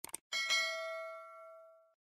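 Notification-bell sound effect: a quick double click, then a single bell ding that rings for about a second and a half, fading, and cuts off sharply.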